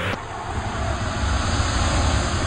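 Added fireball sound effect: a steady rushing noise over a deep rumble, slowly growing louder.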